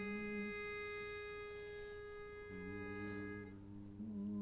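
A barbershop quartet's pitch pipe sounding one steady note to give the starting pitch, with a brief low hum near the start. About two and a half seconds in, the quartet's voices come in humming a sustained chord under it, and the pipe stops shortly before the end.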